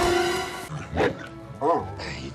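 A loud rushing crash with a steady held tone cuts off abruptly under a second in. Then come two short dog-like yelping cries from a calot, the film's Martian dog-creature: one about a second in and one shortly before the end.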